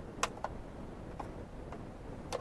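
A few small plastic clicks as the overhead console's sunglasses holder in a 2014 Ford Focus ST is pressed and swung open. The sharpest click comes about a quarter of a second in, with fainter ones after.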